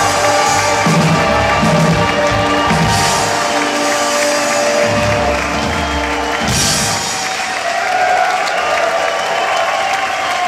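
Rock band with electric guitars, bass and drums playing the last bars of a song live. The drums stop about seven seconds in, leaving held guitar tones ringing while the crowd cheers and applauds.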